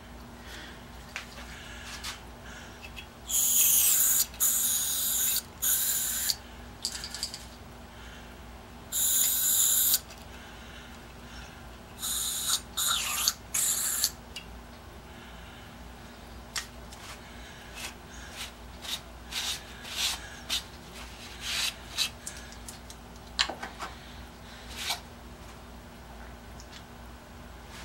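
An aerosol can sprayed in short hissing bursts, three spells of one to three seconds in the first half, at a part held in a bench vise; after that come scattered light clicks and ticks of metal being handled.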